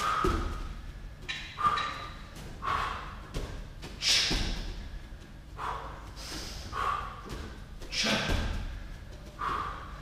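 Bare feet landing with a thud on padded gym mats from a tuck jump, about every four seconds. Between the landings there is heavy, rhythmic breathing, a puff about once a second.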